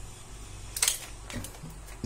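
A few short clicks and knocks from the parts of a homemade popsicle-stick and pen-barrel blaster being handled and pulled apart, the loudest just under a second in and a softer one about half a second later.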